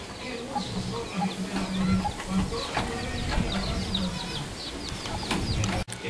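Chickens clucking, with many short high peeps falling in pitch, several a second.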